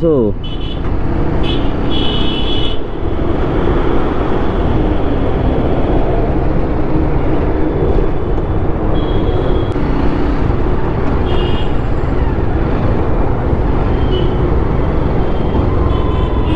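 Motorcycle riding through heavy city traffic: a steady rumble of engine and wind noise, with several short, high-pitched horn toots from surrounding vehicles, a cluster of them in the first three seconds and more about nine, eleven and fifteen seconds in.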